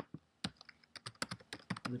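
Computer keyboard typing: a quick run of keystrokes, several clicks a second, as a line of code is entered.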